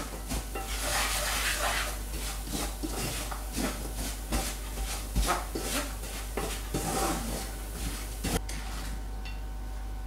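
Wooden spatula stirring and scraping sugar-crusted almonds around a stainless steel frying pan, in repeated strokes about once or twice a second, easing off near the end. The water has boiled away and the sugar has dried to a sandy crust that is being stirred on medium heat until it melts back into caramel.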